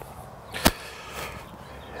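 A single sharp snap or click about two-thirds of a second in, over faint steady background hiss.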